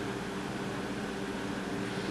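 Steady background hum and hiss of room noise, with a faint constant low drone and no other events.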